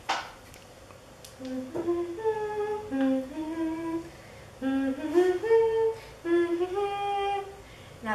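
A girl humming a tune with her mouth closed: three short phrases of held notes stepping up and down, after a brief noisy sound at the very start.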